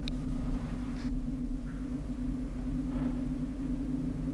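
A steady low droning hum with a rumble beneath it, the background tone of the film soundtrack during a pause in the dialogue.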